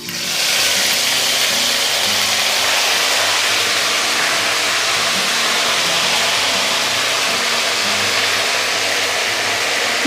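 Ginger paste frying in hot oil in a kadai: a loud, steady sizzle that starts suddenly as the paste hits the oil.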